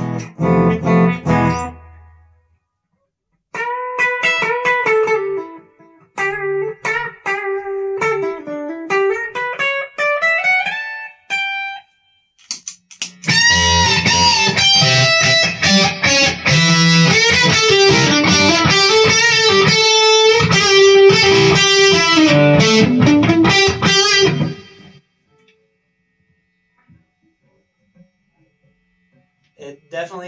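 Gibson Les Paul Tribute electric guitar played through a Boss combo amp: a strummed chord, then a single-note melodic riff for several seconds, then a long stretch of fast, dense playing that stops about 25 seconds in. In the last few seconds the rig sits quiet with no static crackle, now that the guitar's control and switch cavities are shielded with copper tape.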